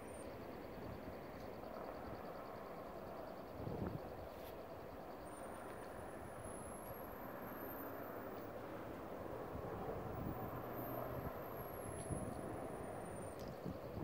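Faint, steady drone of a distant formation of CH-47 Chinook tandem-rotor helicopters, growing slightly louder past the middle, with a brief low thump about four seconds in.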